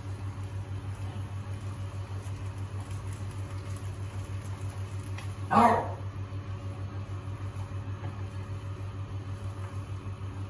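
A steady low hum with a fast, even throb, under soft stirring of rice noodles in a nonstick wok with chopsticks and a wooden spatula. A brief vocal sound breaks in about five and a half seconds in and is the loudest moment.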